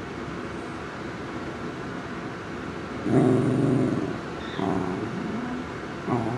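Pembroke Welsh corgi grumbling: a low, drawn-out grumble about halfway through, then a shorter one that falls in pitch a second later.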